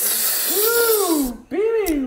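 A man's long, breathy exhale voiced as a high "whoo" that rises and falls in pitch, then a second shorter hoot, a reaction of relish just after a swig of juice.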